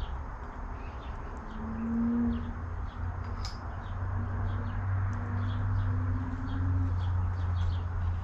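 Small birds chirping in short, scattered calls over a steady low rumble, with a faint hum through the middle that rises slightly in pitch.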